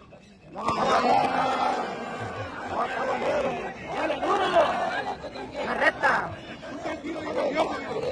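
A crowd of people shouting and chattering excitedly, breaking out suddenly about half a second in. There is one sharp knock about six seconds in.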